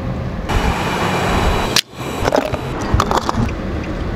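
Car cabin noise: a steady low rumble of engine and road heard from inside the car, broken by a sudden brief drop a little under two seconds in, with a few light clicks after it.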